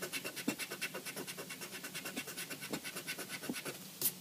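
Pencil-top eraser scrubbing quickly back and forth on paper in a steady run of even strokes that stops just before the end. It is working at a heavily pressed pencil line, which is very difficult to rub out.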